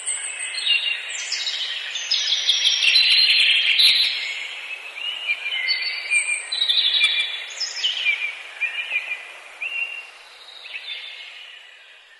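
Many small birds chirping together in quick, overlapping calls. The chorus is busiest in the first few seconds, then thins out and fades toward the end.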